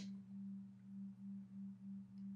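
Faint steady low hum that swells and fades about three times a second.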